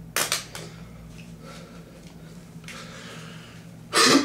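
A marker pen tossed down onto a wooden floor: a short clatter with a quick bounce or two just after the start, followed by quieter rustling as he moves.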